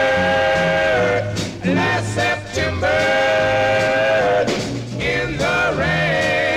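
Doo-wop record: a vocal quartet with backing band holding sustained harmony chords without words, two long chords of about a second and a half each with a third beginning near the end, over moving bass notes.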